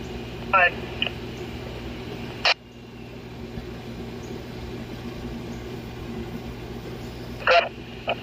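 BTECH handheld radio monitoring a police channel between calls: a clipped voice fragment early on, then a sharp burst of static about two and a half seconds in as the transmission drops off. Steady hiss and low hum follow, with another short burst near the end as the next call keys up.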